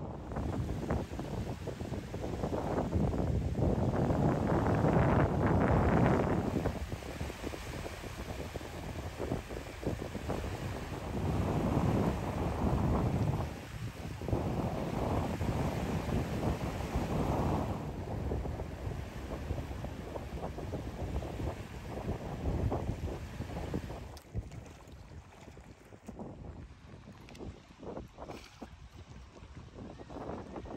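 Wind buffeting the microphone in irregular gusts, with water lapping underneath. The gusts ease off and the sound grows quieter for the last few seconds.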